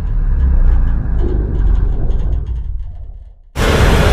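Deep, steady rumble of horror-trailer sound design with faint clicking high above it, fading away over about three seconds; then a sudden loud hit about three and a half seconds in.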